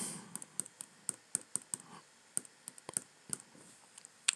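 Light, irregular clicking and tapping on computer input devices, a dozen or so faint clicks spread over the four seconds.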